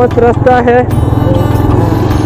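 A motorcycle engine running steadily while the bike rides along a dirt track. A voice over music sits on top of it for about the first second.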